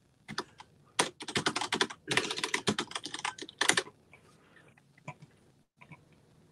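Typing on a computer keyboard: a quick run of keystrokes lasting about three and a half seconds, then a few scattered taps.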